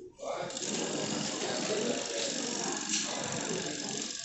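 Steady mechanical whirring and rattling of a tool fastening the metal rods and bolts on a carved wooden coffin. It starts just after the beginning and runs evenly, breaking off just before the end, over background voices.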